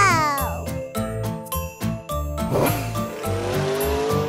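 Bright children's music with a steady beat and tinkling bells. About two and a half seconds in, a cartoon toy-car sound effect comes in: a short rattle and then an engine-like rev that rises in pitch.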